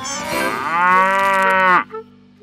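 Cartoon cow mooing: one long moo that dips in pitch at the end and stops abruptly. The cow is restless at being milked.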